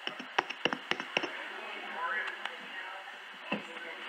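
A microphone tapped about five times in quick succession in the first second or so, being tested after it seemed not to be on, then a single knock near the end. Faint voices are heard in between.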